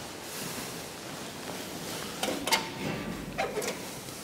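Metal clicks and knocks as the handle and latch of an old elevator's hinged landing door are worked and the door is swung. There are two short bursts about a second apart, the sharpest click about two and a half seconds in.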